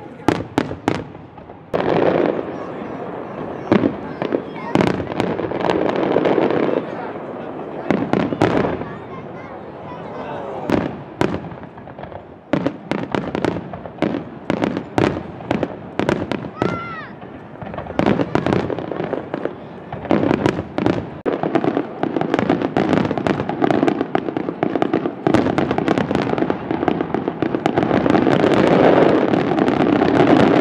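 Aerial firework shells bursting in quick succession, a string of sharp bangs and crackle. The bursts grow denser and louder near the end into a near-continuous barrage.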